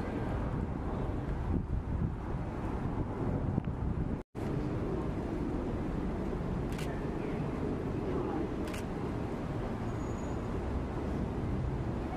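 Outdoor street ambience: a steady low rumble of traffic and idling vehicles. It cuts out for a split second about four seconds in.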